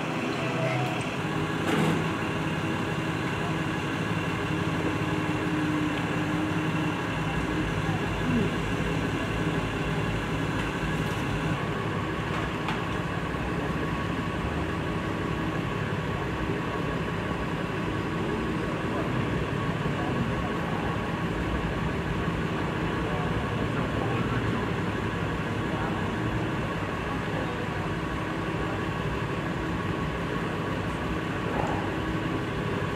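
Steady mechanical hum with faint voices under it.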